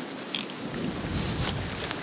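Footsteps and rustling through dry brush and leaf litter, with a few faint snaps, and a low rumble of wind or handling on the microphone that comes in about half a second in.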